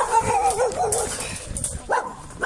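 A small dog whining, one loud high call that wavers in pitch over the first second or so.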